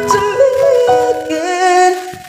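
A voice singing a song with long held, sliding notes over a backing track with keyboard accompaniment.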